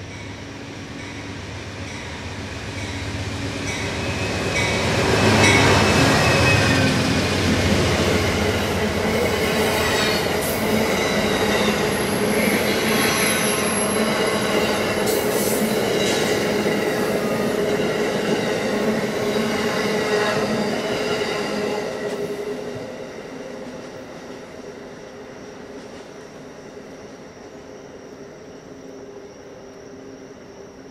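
Amtrak passenger train led by GE P42 diesel locomotives approaching and passing close by. The locomotive rumble builds to its loudest about five seconds in. The coaches then roll past with thin, high squeals from the wheels, and the sound dies away from about 23 seconds in.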